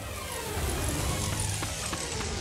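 Cartoon sound effect of a bicycle in a leap: a long falling-pitch glide over a low rumble and a rushing noise.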